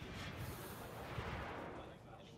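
Broadcast graphics transition sound effect: a noisy whoosh with a low rumble. It starts suddenly, swells, and fades out just before the end.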